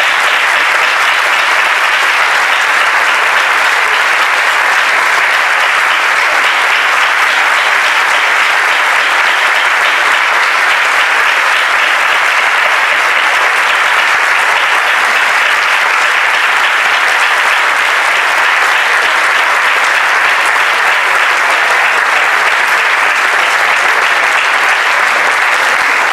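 A large audience applauding, long and steady.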